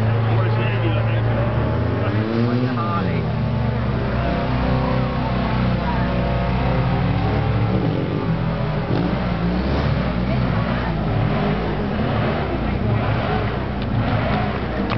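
Stunt motorcycle engine running and revving, its pitch rising and falling about two to three seconds in, with voices underneath.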